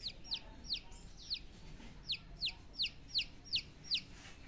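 A chicken chick peeping: a run of about ten short, high peeps, each falling steeply in pitch, two or three a second, with a brief pause after the first second.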